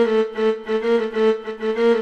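Violin bowed on one low note, repeated in even bow strokes about three times a second.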